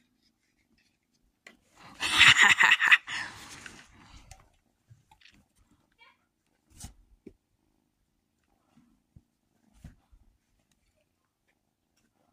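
A house cat hissing in one loud, noisy burst of about a second and a half, about two seconds in, while it tussles with a person's hand, followed by a few faint clicks and rustles.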